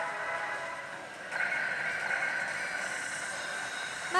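Pachislot machine game sounds, held electronic tones over the steady din of a pachinko parlor, stepping up a little louder just over a second in.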